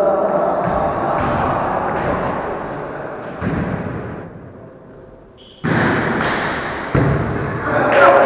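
Volleyball being struck, two sharp thuds near the end that ring on in the gym hall, over players' voices.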